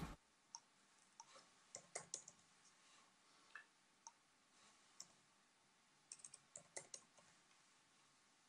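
Near silence with faint, scattered computer keyboard and mouse clicks, some single and some in small clusters, as a chart is being called up on screen.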